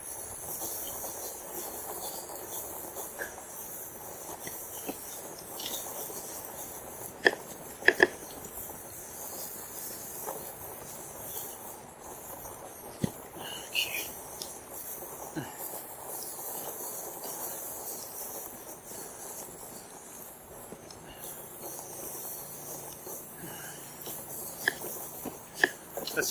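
2018 RadRover fat-tyre e-bike rolling slowly over freshly mown grass: a steady noise of tyres and bike, with occasional sharp clicks and rattles.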